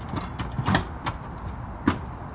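A few short knocks and light scrapes as a metal-framed dome skylight is handled and shifted on its wooden roof curb, the loudest knocks near the middle and near the end.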